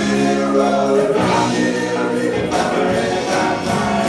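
Live rock band playing a song, with electric guitars, keyboard and drums under singing voices; long chords are held through the first half.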